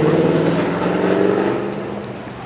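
A motor vehicle's engine running nearby with a steady low hum, fading away over the second half.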